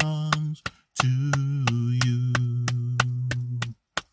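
A man singing long held notes of a praise chorus while clapping his hands in a steady beat, about three claps a second. The singing breaks off briefly about half a second in and resumes, ending just before the last clap.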